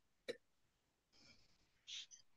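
Near silence on a call, broken by one short, faint sound about a third of a second in and another brief faint one near the end.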